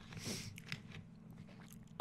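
Faint mouth noises and a few small clicks close to a microphone, over a low steady hum.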